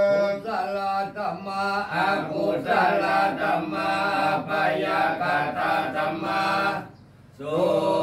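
Group of Theravada Buddhist monks chanting Pali verses in a steady recitation, with a short break for breath near the end.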